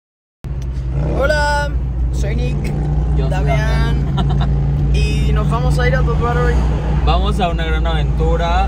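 Steady low rumble of a moving car's engine and road noise, heard from inside the cabin, starting suddenly about half a second in.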